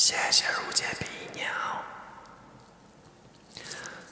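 A man's breathy, whispered vocal sounds close to a wired earphone microphone, with no clear words. They start suddenly, are loudest in the first second and fade out, with a brief hissy burst near the end.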